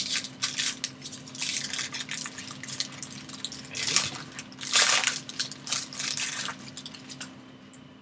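Foil wrapper of a jumbo pack of baseball cards being torn open and crumpled by hand, crinkling in irregular bursts, loudest about five seconds in.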